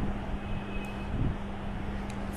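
Steady background noise, a constant hiss and rumble with a steady low hum running under it.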